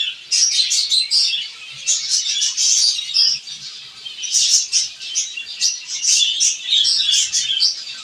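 A colony of zebra finches calling together, a dense, continuous chatter of many short, high chirps.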